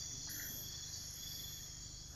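Faint, steady chorus of night insects, several high trills held unbroken and layered together, with one brief faint chirp shortly after the start.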